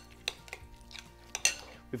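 A spoon stirring a tartare mixture in a ceramic bowl, with a few sharp clinks of the spoon against the bowl. Faint background music runs underneath.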